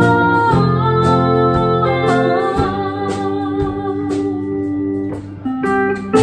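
A live band playing: electric guitar and pedal steel guitar over bass and drums, with a woman singing. A drum beat lands about once a second, and a brief lull near the end is followed by a new chord.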